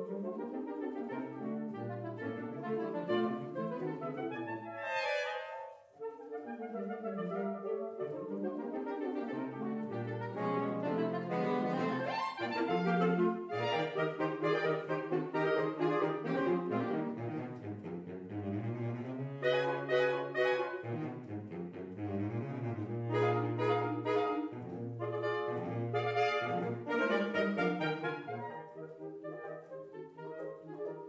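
Saxophone quartet of soprano, alto, tenor and baritone saxophones playing a French classical quartet piece together. There is a brief break about six seconds in, then the ensemble plays on more fully and loudly.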